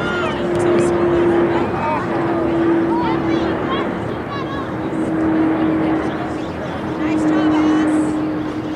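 Outdoor sports-field ambience: a steady drone of noise with a held hum that breaks off and resumes every couple of seconds, and scattered distant voices calling across the field.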